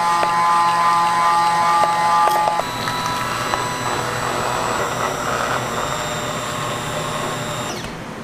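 Handheld immersion blender's motor running steadily, its blade churning a melted chocolate mixture in a glass bowl. The whine changes and gets a little quieter about two and a half seconds in, and near the end the motor switches off and winds down.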